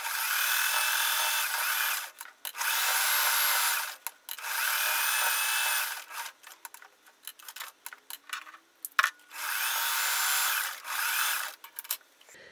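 Electric sewing machine stitching in four runs of about one and a half to two seconds each, one for each side of a square sewn all the way around, stopping between runs, with small clicks and handling in the pauses. The longest pause comes after the third run.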